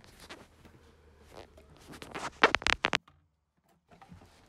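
A quick run of sharp clicks and knocks about two seconds in, over faint scattered handling noise, then it cuts to dead silence for about a second near the end.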